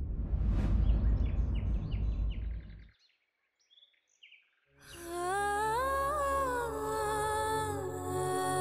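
Dramatic background score: a low rumbling swell with a whoosh cuts off about three seconds in, and after a short silence a wordless humming voice takes up a slow, gliding melody.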